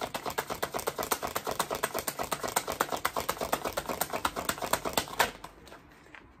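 A deck of tarot cards shuffled by hand: a fast, even run of light card clicks, about seven a second, which stops with a slightly sharper snap about five seconds in.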